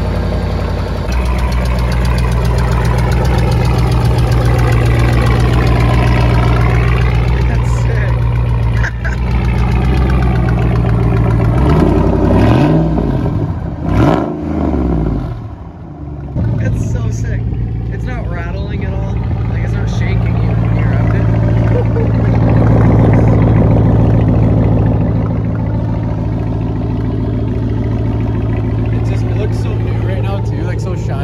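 Dodge Ram 1500's 5.7 L Hemi V8 idling through a newly made bedside exit exhaust, just after its first start. There are two quick throttle blips about halfway through, rising and falling, then a short dip before it settles back to a steady idle.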